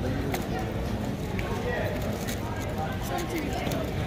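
Indistinct chatter of many voices in a large hall, with scattered sharp clicks.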